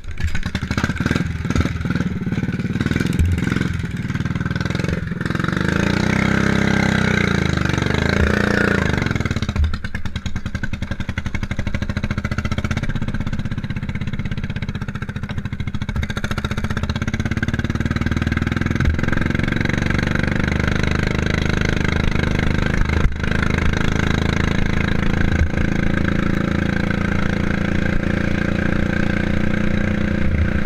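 Racing lawnmower's small petrol engine catching and running. It revs up and down about six to nine seconds in, then runs hard and fairly steadily as the mower drives along a grass track.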